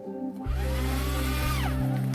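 Electric paper shredder starting about half a second in and cutting through a paper envelope, its motor whine falling in pitch near the end as the paper goes through.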